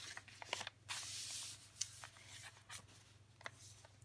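Paper handling: a journal page being turned, with a soft paper swish about a second in and a few light taps and rustles of card.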